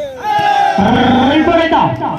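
A man's loud, drawn-out excited shout over crowd voices, greeting a point won in a volleyball rally.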